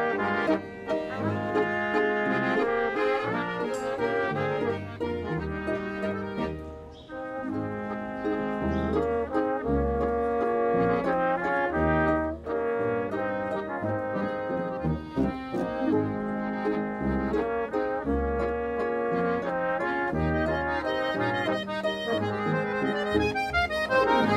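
Bavarian folk-music ensemble playing an instrumental piece: trombones and a flugelhorn carry the melody over accordion, violins, harp and a double bass marking an even bass line.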